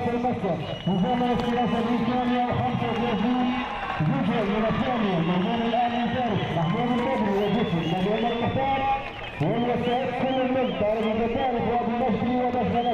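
A voice with long held, wavering notes, like singing or chanting, with only brief breaks.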